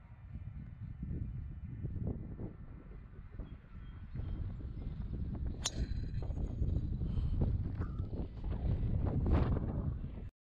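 Wind buffeting the microphone, with one sharp crack of a golf club striking the ball from the tee just before six seconds in.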